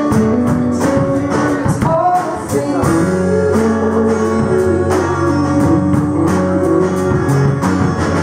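Live folk-rock band playing: a woman singing over a strummed acoustic guitar, with a drum kit keeping a steady beat.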